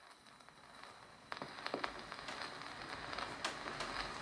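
Surface noise of a 1920 Victor 78 rpm shellac record in its lead-in groove, played with a steel needle through a Victor Orthophonic soundbox and exponential horn: a steady hiss with scattered crackles and clicks. The hiss comes in abruptly, and the clicks grow louder and more frequent from about a second in.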